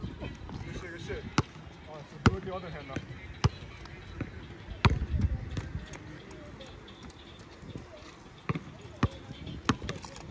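Basketball bouncing on an outdoor brick court: single sharp bounces at uneven intervals, with a lull of a few seconds in the middle.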